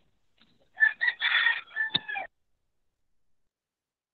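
A rooster crowing once, a crow of about a second and a half, heard over video-call audio.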